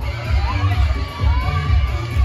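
Dance music with a steady heavy bass beat played over a hall PA, while the audience cheers and whoops.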